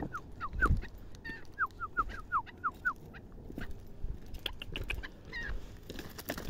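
Chukar partridge calling: a rapid run of short, falling chuck notes, about four a second for some three seconds, then a few higher notes near the end. Footsteps crunch on loose stones.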